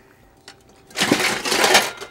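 Loud clattering and rasping for about a second, starting about a second in: a lump of brown sugar that has set rock hard being broken up with a kitchen tool.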